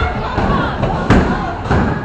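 A bowling ball landing on the wooden lane with a loud thud about a second in, over the background chatter of a bowling alley.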